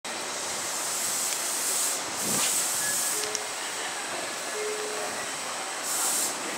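Meitetsu 3700-series electric train running slowly into the platform and braking to a stop, with a steady high hiss and louder bursts of compressed-air hiss about two seconds in and again near the end.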